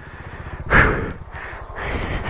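A person's hard, breathy exhale about three-quarters of a second in, trailing off into softer breath noise over a low, pulsing rumble.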